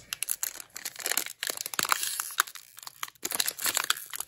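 Foil wrapper of a trading-card booster pack crinkling and crackling in the fingers as it is pulled at to tear it open, a dense run of irregular sharp crackles. The wrapper is hard to open.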